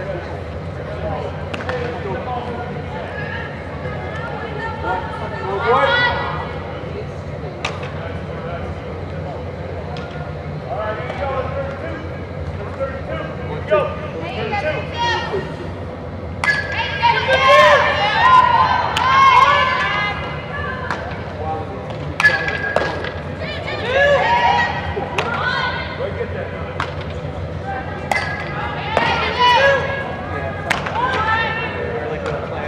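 Softball infield practice: distant shouts and chatter from players, with scattered sharp pops and cracks of bat on ball and ball into glove, over a steady low hum.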